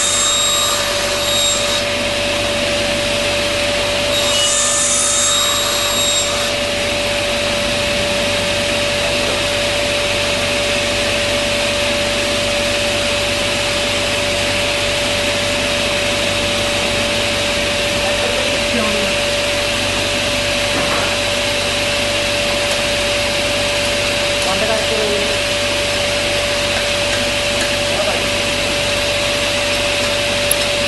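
Sliding-table table saw running steadily, its motor and spinning blade giving a constant whine over a dense hum. Two short, brighter hissy stretches come in the first six seconds.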